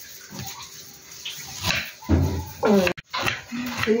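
Knife cutting red onion on a wooden chopping board, a few light chops, then a loud pitched call that falls in pitch and stops abruptly about three seconds in.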